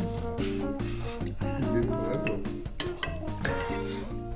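Instrumental background music: a light tune of short notes stepping from one to the next, with a few sharp ticks.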